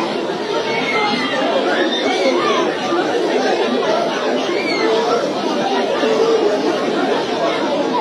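Many voices talking at once: crowd chatter, continuous and unbroken.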